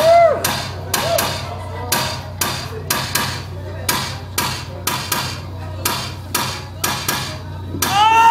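Live electro-punk band's beat: sharp percussive hits at an even pace of about two a second over a low steady drone, in a gap between vocal lines, with a short sung note at the very start.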